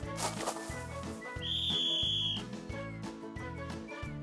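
Light children's background music with a steady beat, and a single whistle blast held for about a second in the middle, a sports-style whistle sound effect.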